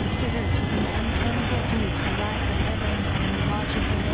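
A dense, steady wash of several recordings playing over one another, music and voices blurred into a noisy drone with a muffled top, with many short pitch slides and brief flashes of hiss at irregular intervals, about two a second.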